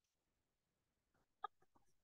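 Near silence, with a few faint, very short pitched sounds clustered about a second and a half in.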